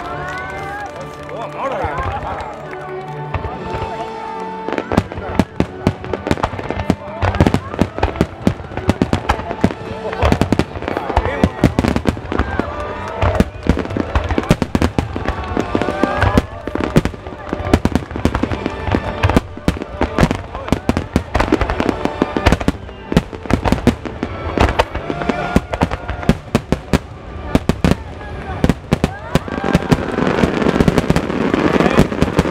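Barrage of aerial firework shells bursting, sharp bangs following one another in quick succession, thinner for the first few seconds and then densely packed.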